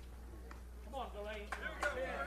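Faint distant voices calling out on a softball field, starting about a second in, with a few faint clicks.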